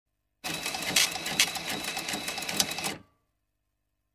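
Rapid mechanical clicking clatter, like flipping letter tiles, which serves as the sound effect for an animated title card. It lasts about two and a half seconds, with a few louder clicks, and then cuts off abruptly.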